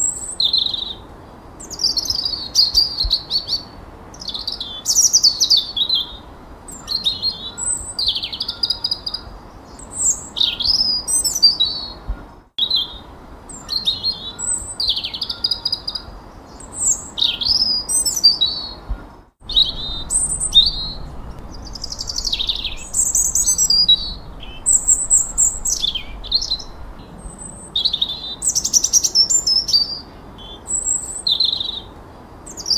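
Songbird song: a continuous run of varied, high-pitched whistled phrases, each under a second, many sweeping downward in pitch. It cuts out for an instant twice.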